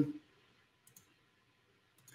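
A couple of faint computer mouse clicks about a second in, from clicking to start a screen share.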